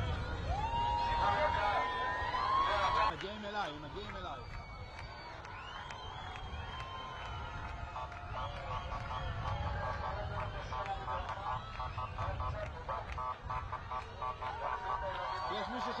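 Crowd of people cheering and shouting. Through the middle runs a rapid, evenly pulsing tone over a low rumble.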